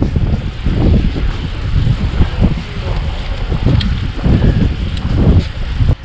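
Wind buffeting the microphone of a camera on a moving bicycle: a loud, uneven low rumble that surges and eases every second or so.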